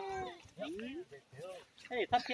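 Several short pitched vocal calls, each rising then falling in pitch, with quiet gaps between them.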